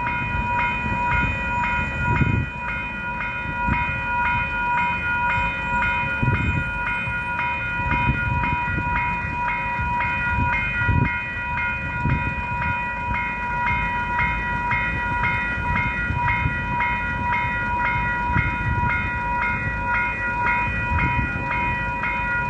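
Railway level crossing warning bells ringing in a fast, even rhythm, signalling that a train is approaching and the crossing is closed. An uneven low rumble runs underneath.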